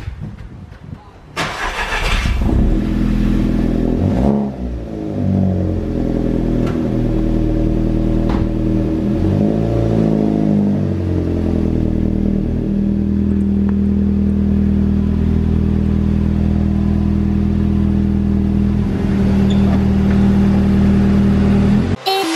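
Volkswagen Golf 5 GTI's tuned turbocharged 2.0-litre four-cylinder, at about 270 hp, starting about a second in with a sudden flare of revs, heard at its dual centre exhaust. The revs rise and fall a few times, then the engine settles to a steady idle.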